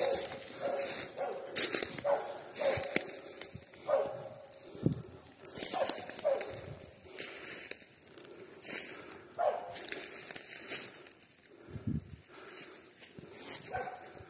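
Hunting dog barking repeatedly and irregularly at a wounded wild boar it is holding at bay.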